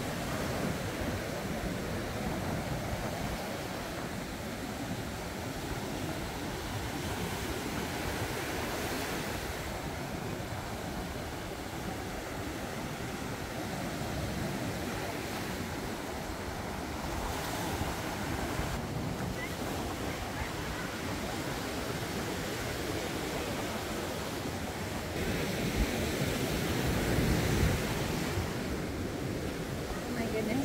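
Gulf surf breaking and washing up a sand beach, a steady rush of waves rising and falling, with a louder wave near the end.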